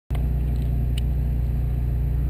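Steady low rumble, even in level, with a faint click about a second in.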